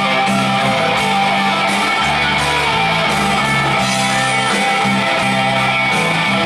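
Live rock band playing an instrumental passage, with no singing: electric guitar over a five-string bass line whose low notes change about every half second.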